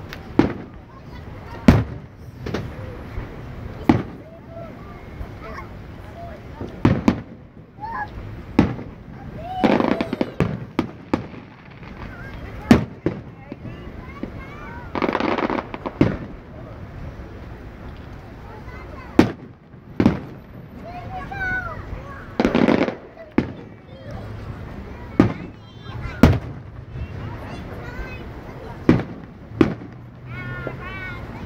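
Aerial fireworks shells bursting overhead: about fifteen sharp bangs at irregular intervals, with a few longer, louder stretches of crackle and rumble.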